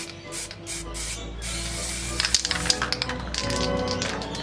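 Aerosol spray paint can hissing in short bursts, over background music, with a few sharp clicks near the middle.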